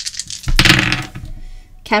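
Small hard objects clinking and rattling together as they are handled: a run of quick clicks, then a louder clattering jumble about half a second in.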